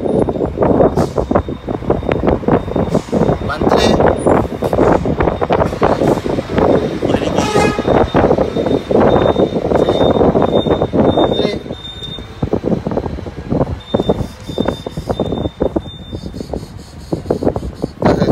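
Muffled, overlapping talk and wind rumbling on the phone's microphone, with road traffic going by on the highway.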